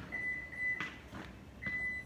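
Reverse-gear warning beeps from a 2021 Subaru Crosstrek that has been shifted into reverse: a steady high electronic tone in two long beeps, the second starting about a second and a half in, with a short click between them.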